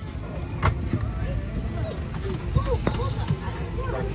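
Steady low rumble of an airliner cabin, with people talking over it and a sharp click about half a second in.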